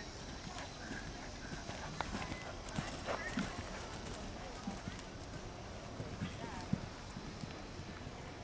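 Hoofbeats of a horse cantering on sand arena footing, a series of soft low thuds, with people talking in the background.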